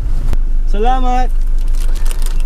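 Car cabin noise: the steady low rumble of the car driving, heard from inside. A short voiced sound, a brief word or hum, comes about a second in, after a single click.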